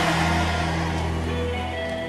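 Live church music holding sustained chords, with congregation cheering that dies away over the first second or so.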